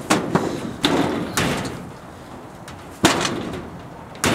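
Sheet-metal shed door rattling and banging in a series of sharp knocks, about five, as it is pulled at against its lock; the loudest bang comes about three seconds in.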